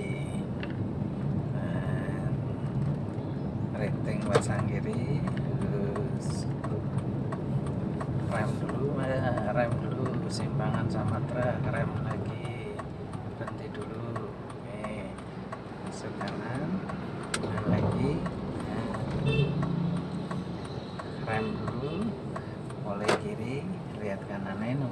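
Steady low hum of a car's engine and tyres heard from inside the cabin while driving, with a few light clicks. Faint voices come and go.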